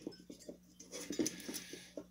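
Small metallic clicks and light rattling as the finned metal heatsink cooler of an HD 5670 graphics card is handled on a wooden desk while its retaining clips are undone.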